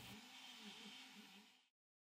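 Near silence: a very faint 3D printer stepper-motor whine that rises and falls in pitch a few times a second as the print head runs its circular path. It cuts out to dead silence about three-quarters of the way through.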